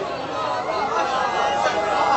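Several voices talking and calling out over one another: crowd chatter.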